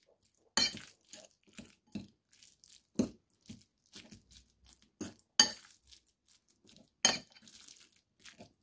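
A metal fork stirring ground pork in a bowl, clinking and scraping against the bowl in irregular strokes. The sharpest clinks come about half a second in, at three seconds, twice around five seconds and near seven seconds.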